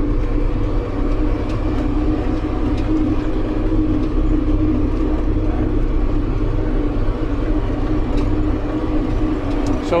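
John Deere 7810 tractor's six-cylinder diesel engine running steadily at full road speed, heard from inside the cab as a constant low drone with a steady hum.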